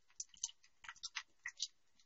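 Wonton strips frying in a saucepan of hot oil: faint, irregular crackling pops, several a second.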